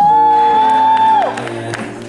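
One long, high whoop from the audience that slides up, holds for about a second and then falls away, over a soft chord held by the band's keyboard. A few faint claps come near the end.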